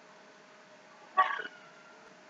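A single short vocal sound from a person, like a hiccup, about a second in, over a faint steady hum.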